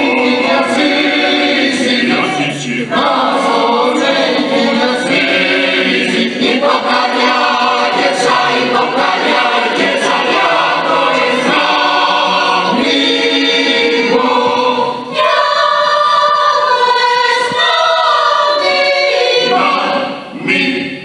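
Mixed choir of men's and women's voices singing a cappella in sustained chords, with a short pause between phrases about fifteen seconds in.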